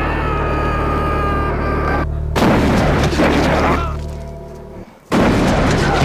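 Horror film clip soundtrack: a steady low drone runs under loud, noisy blasts. One blast starts about two and a half seconds in and fades away by five seconds, and another starts just after.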